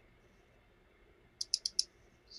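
A computer mouse clicked four times in quick succession, about a second and a half in, against faint room tone.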